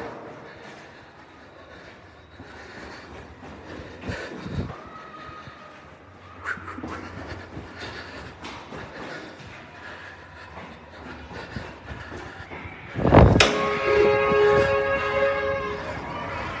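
Faint footsteps and knocks in a concrete parking-garage stairwell, then a sudden thump about 13 seconds in, followed by a vehicle horn sounding one steady chord for about two and a half seconds near the end.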